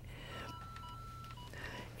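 Faint electronic beeps: three short pips and one steady tone lasting about a second.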